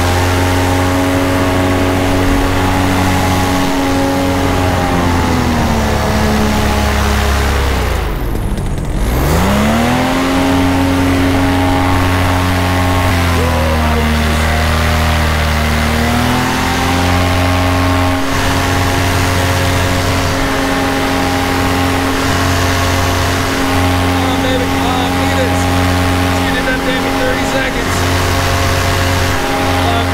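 Flat Top 200R paramotor engine and propeller running in flight, with wind rushing past. The engine pitch drops steeply about six to eight seconds in as the throttle is pulled right back, then climbs again. It eases off and back up once more midway through.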